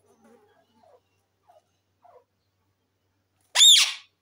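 Indian ringneck parakeet giving one loud, short screech near the end, its pitch rising and then falling, after a few faint soft sounds.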